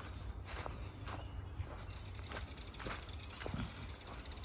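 Footsteps of a person walking along a trail of wood-chip mulch and dry fallen leaves, faint and at a steady pace of roughly one step every half second.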